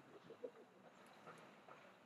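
Faint bird calls over near-silent outdoor ambience, with a few short low notes in the first half second.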